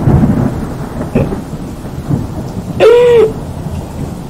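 Low rumbling noise of rain with thunder, then about three seconds in a short, loud wailing cry whose pitch rises and falls.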